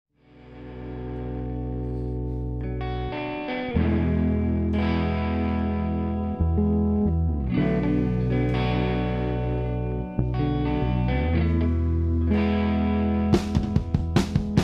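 Live rock band's song intro: electric guitars play long held chords that fade in from silence and change every second or two. Drum hits come in near the end.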